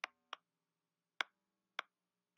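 Four sharp, snap-like clicks at uneven intervals over a faint low hum, the opening of an outro sound track.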